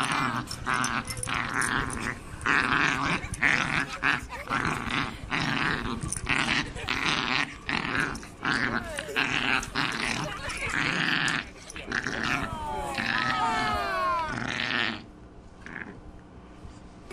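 Small dog growling in play, in rapid repeated bursts close to the microphone, with a run of high, falling whines near the end.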